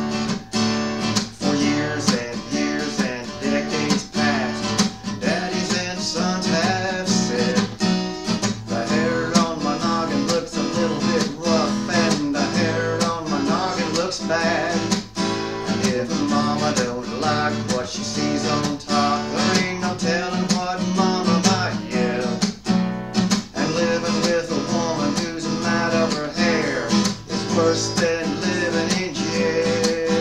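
Acoustic guitar strummed in a steady rhythm, starting a song.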